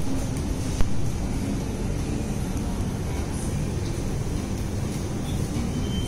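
Steady low background rumble of shop ambience, with a single sharp click about a second in.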